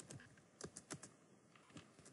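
Faint typing on a computer keyboard: about eight quick keystrokes in small clusters.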